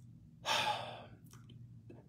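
A man taking one audible breath through the mouth, about half a second in and lasting under a second.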